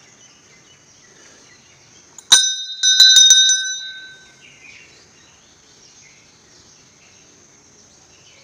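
Hanging brass temple bell rung: one strike, then about four quick strikes just after, ringing with a few clear high tones that fade within about a second and a half.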